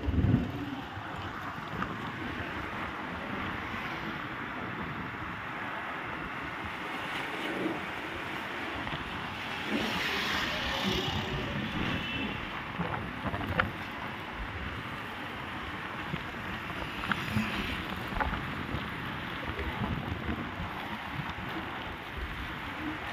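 Steady road traffic noise from a busy city road, with wind on the microphone; the traffic swells louder for a second or two about ten seconds in.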